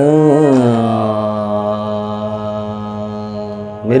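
A man's voice sings a long, low held note in kharaj (lower-register) practice, opening with a brief wavering turn and then sustained steadily for about three seconds over a faint steady drone. Near the end the singing gives way to speech.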